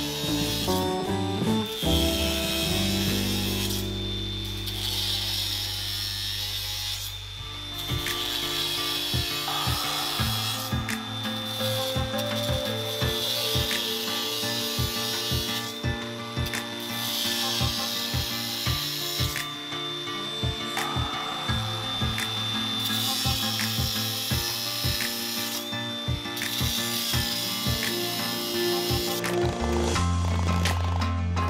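Cordless drill boring into a wooden fence post in about seven runs of two to three seconds each, with a thin high whine while it spins. Background music with a steady beat plays throughout.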